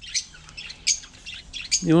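Caged small parrots giving a few short, high chirps and squawks, spaced out about a second apart.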